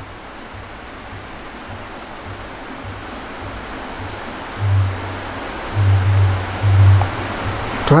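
Steady hiss from a lapel microphone, with several short, low, muffled rumbles in the second half.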